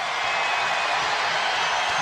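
Steady crowd noise filling a basketball arena during live play.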